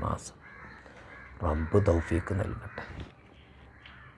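Crows cawing in the background while a man speaks in short phrases, his voice heard briefly at the start and again from about a second and a half in.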